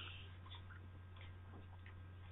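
Near silence: a low steady hum with a few faint, scattered small clicks.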